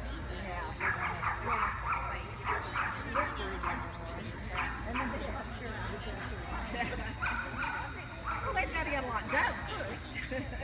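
A dog barking in short, high yips, in several bursts: a busy run about a second in, a few single barks in the middle, and another run near the end.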